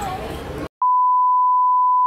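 A murmur of voices cuts off suddenly. After a brief silence, a steady, pure, high beep starts just under a second in and holds unchanged: the test tone that goes with TV colour bars, edited in over the footage.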